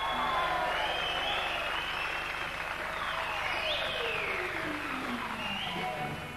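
Concert audience applauding as the band is welcomed on stage. Over the clapping, an electric instrument on stage plays long tones that fall steadily in pitch through the second half.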